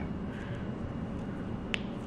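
Low steady kitchen background noise with a single short, sharp click about three-quarters of the way through, as hands handle halved limes over a glass mixing bowl.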